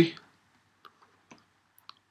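A few faint, short clicks of a stylus tapping on a pen tablet as digits are written, after the end of a spoken word at the very start.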